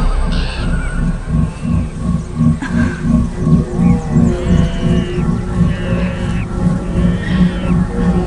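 Suspenseful film score with a low pulsing beat of about three pulses a second. Short arched high calls, animal-like, sound over it now and then.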